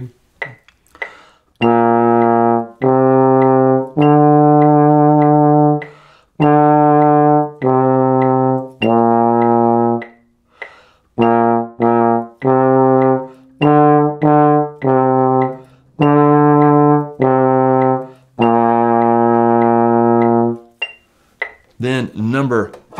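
Trombone playing a slow beginner exercise on low B-flat, C and D: each note is tongued separately, longer notes mixed with a quick run of shorter ones, ending on a held note.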